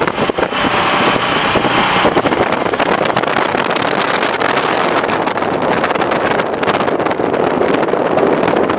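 Steady wind and road noise at highway speed, heard from a moving car, with wind rushing over the microphone.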